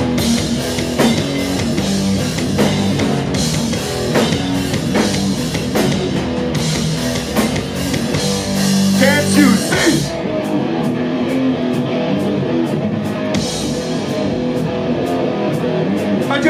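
A rock band playing loud and live on electric guitar, bass and a drum kit. A little past the middle the sound thins for about three seconds before the full band comes back in.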